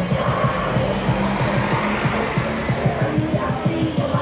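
Music with a fast, low beat over dense background noise.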